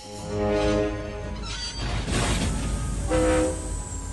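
A train horn blows a long held chord, then sounds again briefly about three seconds in, over the low rumble of a moving train, with music underneath.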